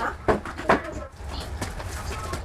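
Two sharp knocks about half a second apart as equipment is picked up and moved.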